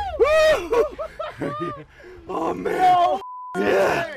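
Men groaning and shouting with strain while hauling against a big fish on a rod. About three seconds in, a short censor bleep covers a word.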